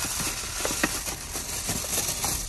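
Paper gift bag and tissue paper rustling as the bag is opened by hand, with a few short, sharp crinkles.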